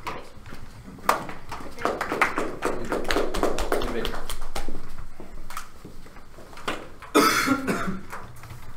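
Indistinct voices and shuffling movement in a small room, with scattered short knocks and a loud cough about seven seconds in.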